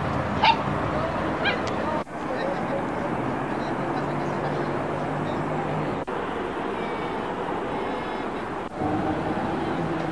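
Outdoor city ambience from camcorder footage on VHS tape recorded at LP speed: a steady traffic hum with a dog barking briefly twice in the first two seconds. The sound drops out for an instant at each cut in the footage, about two, six and nine seconds in.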